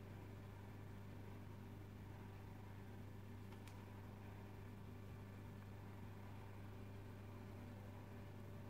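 Near silence: room tone with a steady low hum and one faint click about three and a half seconds in.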